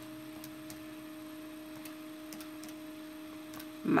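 Faint, irregular clicks of fingers pressing the plastic keys of a Canon desktop calculator while a subtraction is entered, over a steady low hum.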